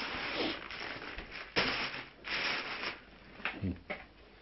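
Plastic wrapping of a toilet paper multi-pack rustling and crinkling as it is handled, with a louder burst of crinkling partway through and a soft thump near the end as the pack is set down.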